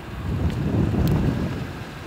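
Wind buffeting the microphone: an uneven low rumble, with two faint clicks in the first half.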